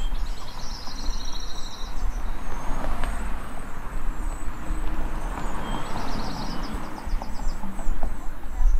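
Outdoor field-recording soundscape: birds trilling in short, fast bursts of high repeated notes over a steady low rumble.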